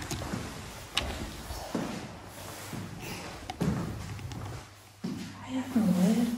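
A few knocks and thuds on a tiled floor while someone walks through the room: a sharp click about a second in and a heavier knock a little after halfway. Near the end comes a short, low voice-like sound.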